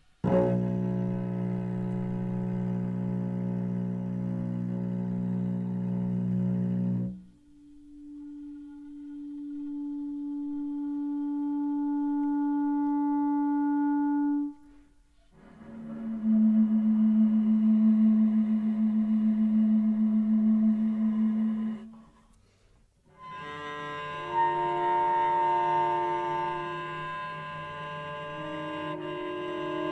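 Contemporary chamber trio of bass flute, cello and clarinet playing long held notes one after another with short gaps between them: a low slow-bowed cello note rich in overtones, a single held note that slowly swells, another held note, then near the end several instruments sustaining together, the cello playing a multiphonic.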